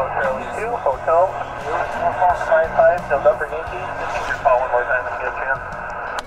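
A distant amateur station's voice over the HF transceiver's speaker, answering the call: narrow, tinny single-sideband speech over a steady bed of static.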